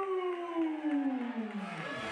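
Ring announcer's voice through the PA system holding one long drawn-out call, the stretched-out end of a fighter's name, falling steadily in pitch over about two seconds before cutting off near the end.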